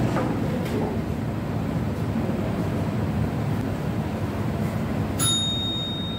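A single bell ding about five seconds in, its clear tone ringing on, marking the start of the next debate speech. Under it is a steady low rumble of room and outside noise.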